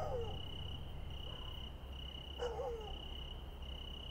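Crickets chirping in a quiet, pulsing trill. Two short falling calls stand out, one right at the start and one about two and a half seconds in.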